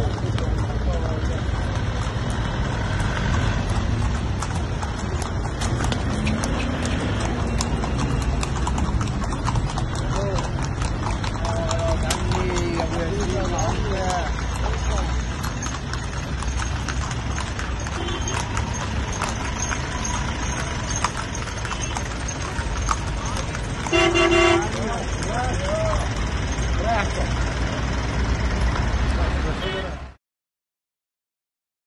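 Horse hooves clip-clopping on the road as horse-drawn carriages (hantour) pass, over street noise and voices. A vehicle horn toots once, briefly, late on.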